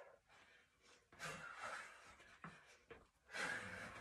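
A woman's hard breathing during a workout: two long, faint exhales, with a couple of light taps between them.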